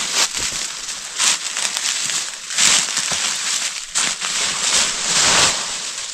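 Dry leaf litter and leafy branches rustling and crackling in repeated bursts about a second apart, as someone moves through forest undergrowth.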